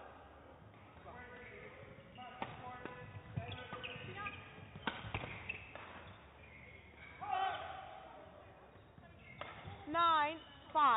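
Badminton rally: rackets hitting the shuttlecock with sharp cracks, the two loudest about two and a half and five seconds in, among short squeaks of shoes on the court.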